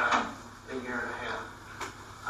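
Indistinct speech in a meeting room, with a short click near the end.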